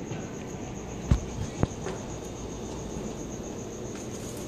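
A cricket chirping in a steady, evenly pulsing high trill over a low steady rushing noise. Two sharp knocks come about a second and a second and a half in.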